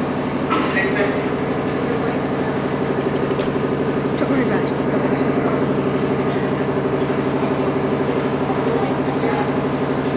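Steady electrical hum and buzz from the microphone and sound system, with a few scattered clicks as the microphone is handled and faint voices in the room.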